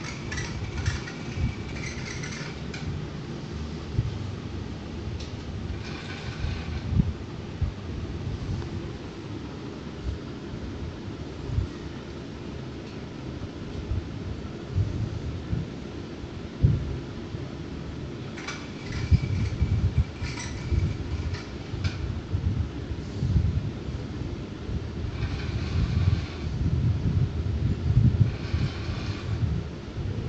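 Small geared DC motors of a wheeled hobby robot running in several spells of a few seconds each, with a faint whine, over a steady low rumble.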